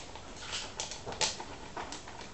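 Domestic cat chewing dry cat biscuits: irregular short crunches, about two a second.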